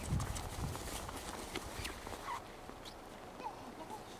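An 8.5-week-old German shepherd puppy giving several short, high yips and whines while playing, each one a quick squeak sliding up or down in pitch. Low thuds and crunching steps in snow sound underneath, heaviest in the first second.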